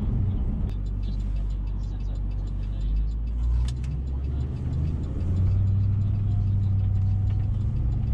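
Pickup truck's engine and road noise heard inside the cab while driving: a steady low rumble. About halfway through the engine note steps up and grows louder.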